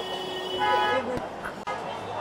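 A vehicle horn honks once, briefly, about half a second in, over the sound of people talking.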